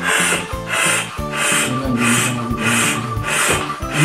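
Hand floor pump worked with steady strokes, each stroke a rush of air, about six strokes at roughly three every two seconds, inflating a punctured bicycle inner tube to find the hole. Background music plays throughout.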